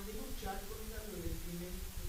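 Speech only: a lecturer talking.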